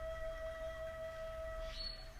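Soft background meditation music: one sustained bell-like tone holding steady, then fading out near the end as a brief higher note comes in.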